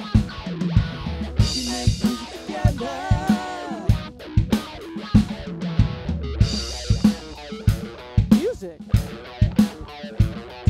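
Rock music: an electric guitar plays lead lines with string bends and chord stabs over a drum kit beat with hits about twice a second.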